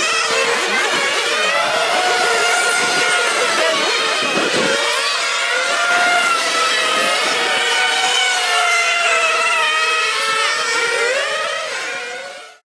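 Small glow-fuel (nitro) engines of 1/8-scale on-road RC race cars running at high revs, their high-pitched whine rising and falling as the drivers throttle through the corners; the sound fades out at the end.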